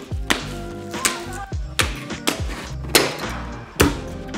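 Scissors snipping through plastic zip ties, a few sharp separate snips over background music.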